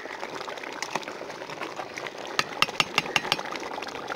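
A pot of biryani rice steaming on the stove with a steady bubbling hiss. About two and a half seconds in comes a quick run of about seven sharp taps, close together.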